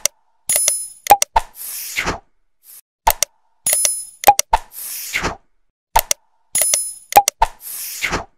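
Sound effects of an animated subscribe-button outro: sharp mouse-click and pop sounds, a bell-like ding and a soft swish. The same group repeats three times, about every three seconds.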